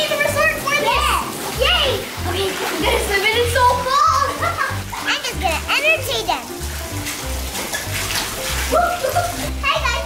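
Young children talking over cheerful background music with a bouncy, repeating bass line, with some water splashing and spraying underneath.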